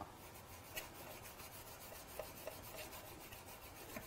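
Faint brushing of a bristle paintbrush working white gesso over dried, textured structure paste on an MDF cut-out: a quick run of soft, scratchy strokes.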